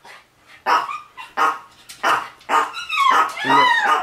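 Dog barking several times, the later calls longer and falling in pitch.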